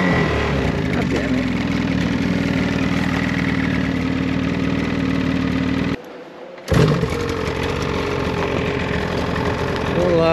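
Snowmobile engine running at a steady speed while the sled cruises along the trail. About six seconds in the sound drops off briefly, then the engine note comes back and runs steadily again.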